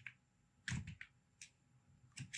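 Computer keyboard typing: a few separate, light keystrokes with short gaps between them.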